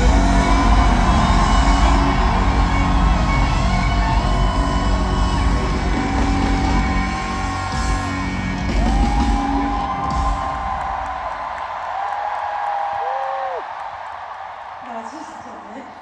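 Live rock band in a stadium playing the final bars of a song, the drums and bass stopping about ten seconds in. Long, high, held vocal whoops glide up and down over the music and carry on briefly after the band stops, then fade.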